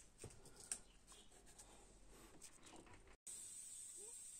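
Faint scratching and small clicks of hand-cleaning inside an aluminium thermostat housing on an engine. About three seconds in, the sound drops out and a steady hiss takes over.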